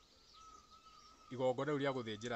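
A man's voice: a short pause, then he starts speaking again just past halfway through.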